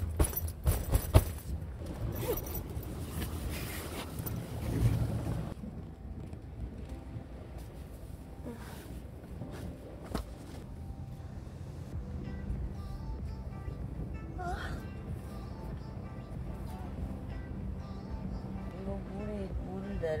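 A tent door being unzipped and its fabric handled, with quick sharp tugs in the first second, then soft background music after an abrupt change about five seconds in.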